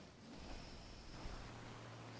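Quiet room tone with faint handling sounds, a faint high steady whine, and a faint low hum over the second half.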